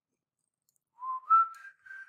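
Near silence for about a second, then a person whistles a short tune, a few held notes stepping upward.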